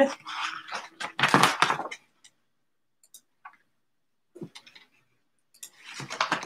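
A picture book being handled and moved aside: a burst of rustling and knocks in the first two seconds, then a few faint taps.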